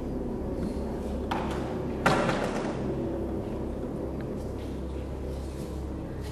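A single thud about two seconds in, over a steady low hum.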